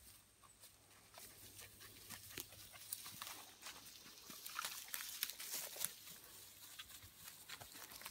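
Soft, irregular rustling and crunching of footsteps through grass and dry pine needles, with a German shepherd's breathing close by as it works a scent trail.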